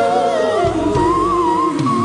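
Live pop ballad performance: a female lead voice holds long, wavering high notes, stepping up to a higher held note about a second in, over a sustained backing of choir and band.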